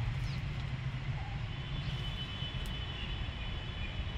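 Steady low rumble of a distant engine, strongest in the first couple of seconds, with a faint thin high whine joining about halfway through.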